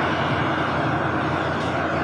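Steady, even background rushing noise with no changes or sudden sounds.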